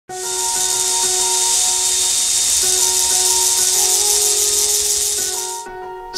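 A cordless drill spinning a 3D-printed plastic ratcheting CVT, heard as a loud, steady high hiss-like whir that stops suddenly about five and a half seconds in. Background music with sustained plucked notes plays under it.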